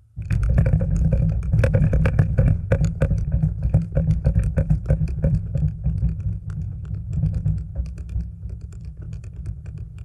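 A long rapid series of buried explosive charges detonating: many sharp cracks in quick irregular succession over a deep rumble, starting abruptly and dying away near the end. The blasting is set off to liquefy the sandy ground around full-scale test piles.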